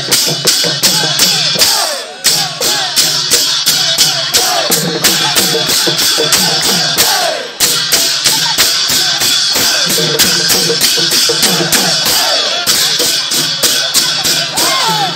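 Dhol drums and large brass cymbals played together in a fast, steady beat, with voices singing and calling over it. The beat drops out briefly about two seconds in and again midway.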